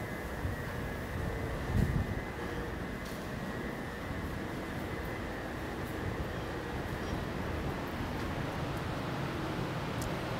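Steady low rumble and hiss of a large vehicle-maintenance garage, with a faint high whine over the first several seconds and a soft low bump about two seconds in.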